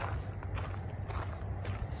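Footsteps on a trail, faint scattered steps over a steady low rumble on the phone's microphone.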